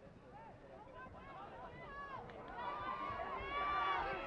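Several distant voices shouting and calling out across a soccer pitch, overlapping. They grow steadily louder toward the end.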